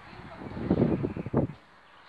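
Wind buffeting the microphone in a gust, a loud low rumble lasting about a second that drops away abruptly.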